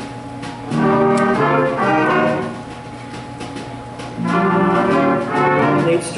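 High school jazz band with brass and saxophones playing two loud ensemble phrases, the first about a second in and the second a little past the four-second mark, with quieter playing before and between them.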